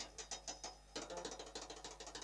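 Large frame drum (daf) tapped lightly with the fingers in a fast, quiet rhythm, a brief pause just before a second in, then a quicker run of softer taps.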